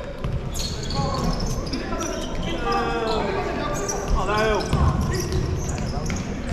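Indoor futsal game echoing in a sports hall: sharp knocks of the ball being kicked and played, short squeals from shoes on the court, and players' shouts and spectator chatter.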